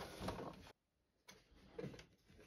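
Faint clicks and light tapping of plastic parts being handled as the washer dryer's circuit-board housing is clipped back into place, broken by a short spell of dead silence just under a second in.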